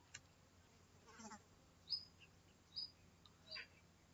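Near silence: room tone with three faint, short high chirps about a second apart, like a small bird calling.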